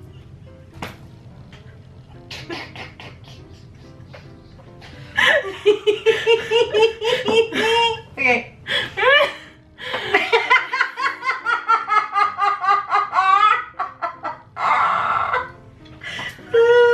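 Two women laughing together: quiet, stifled giggling at first, breaking into loud, prolonged fits of laughter about five seconds in.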